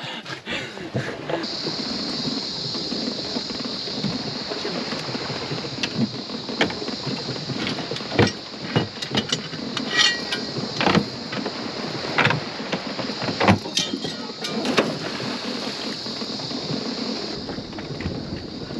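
Scattered knocks and clunks of gear and feet on a small boat's deck, over a steady high-pitched hiss that starts about a second in and stops just before the end.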